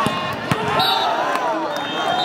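Volleyball spike: a sharp smack of a hand on the ball, then a second smack about half a second later, with shouting voices throughout.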